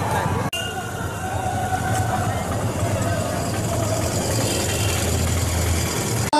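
Outdoor ambience at a busy entrance: indistinct voices and a car engine running steadily with a low hum.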